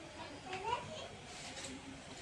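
A brief rising call from a person's voice, child-like, about half a second in, over a faint background.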